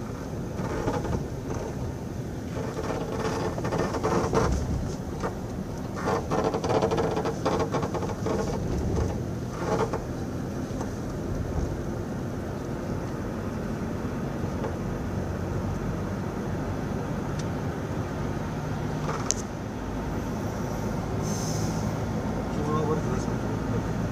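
A car driving at low speed: a steady engine and road hum, with indistinct voices over it during roughly the first ten seconds.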